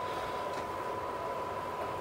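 A faint, steady, high-pitched test tone over a soft background hiss. It is the sine-wave signal driving the tube amplifier while its distortion is being measured.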